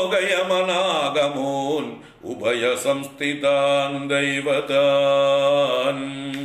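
A man chanting a Sanskrit stotram verse in slow, melodic recitation, holding long steady notes in two phrases with a short breath about two seconds in.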